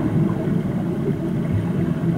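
Low, muffled, steady underwater churning of racing swimmers' strokes and kicks in a pool, heard through a submerged camera.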